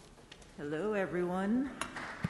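A single drawn-out vocal sound, a little over a second long, dipping and rising in pitch, with a few faint clinks around it. A sharp click near the end as the podium microphone is handled.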